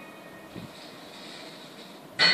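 Faint steady background noise from a television soundtrack heard through the set's speaker, in a lull between music cues, with a brief soft sound about half a second in.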